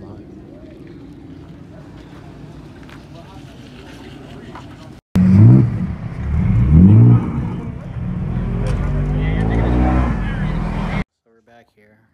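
After a few seconds of low background rumble, a BMW E46 3 Series sedan's engine revs hard twice, climbing in pitch, then holds at high revs as the car spins donuts on loose dirt. The sound cuts off suddenly about eleven seconds in.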